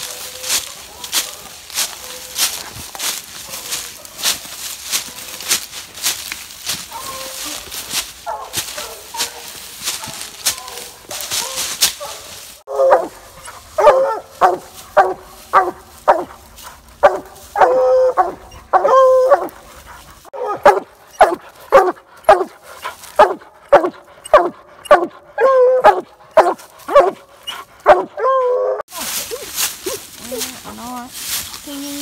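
Footsteps crunching through dry leaves at a steady walking pace. About halfway through, a hound barks treed at the base of a tree: a loud, fast run of barks, about two a second, which marks game treed above it.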